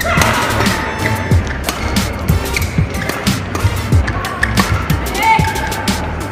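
Badminton doubles rally: rackets striking the shuttlecock in quick exchanges and court shoes squeaking briefly on the court mat, over music.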